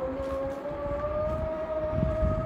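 A long, steady, siren-like tone that rises slightly in pitch and holds, over a low background rumble.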